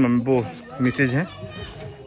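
Background voices of people talking: two short, higher-pitched spoken phrases in the first second or so, then quieter chatter.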